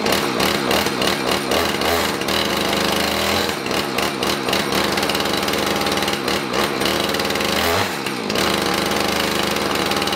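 Husqvarna two-stroke chainsaw running at high throttle, its chain spinning around the bar. About eight seconds in the engine pitch drops briefly as the throttle is eased, then climbs back. The chain has been run loose to wear off its burrs and now spins freely.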